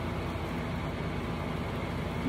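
A steady low background hum with a faint even hiss, unchanging throughout, with no distinct events.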